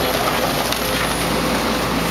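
Link-Belt tracked excavator's diesel engine running steadily up close, a constant drone with a faint steady whine over it.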